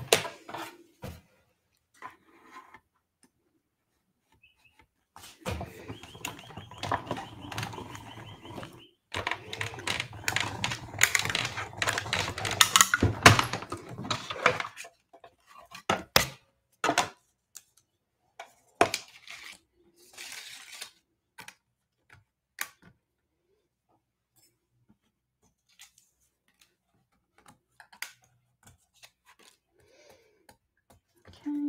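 Manual die-cutting machine being cranked, rolling a plate sandwich with metal dies through its rollers to cut stamped cardstock. It makes a continuous rough run of about nine seconds, starting about five seconds in, with a brief break partway. Scattered clicks and knocks of the plates being handled follow.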